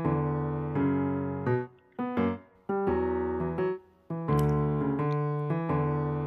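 Background piano music: held chords that fade and change about every second and a half, with short breaks between some of them.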